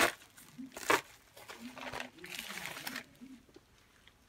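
Yellow padded paper mailer crinkling and rustling as it is opened and handled, with two loud crinkles, one at the start and one about a second in, then softer rustling that dies away near the end.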